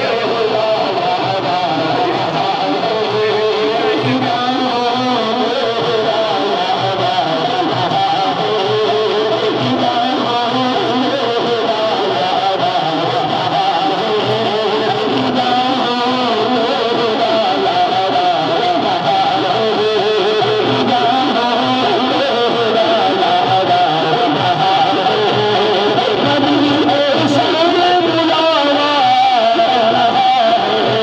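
Men's voices singing a naat through microphones: an unbroken devotional melody of long wavering notes.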